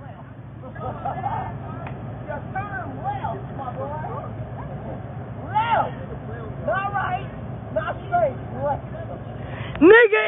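Steady low engine rumble of a tow truck pulling a car stuck on train tracks, with people's voices talking over it.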